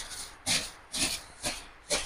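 A broom swishing in quick strokes, four of them about two a second.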